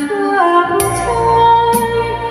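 A woman singing a Thai song into a microphone over a karaoke backing track, with a regular beat landing about once a second.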